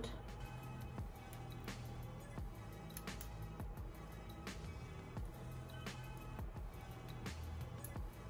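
Quiet background music with steady held tones and light ticking percussion.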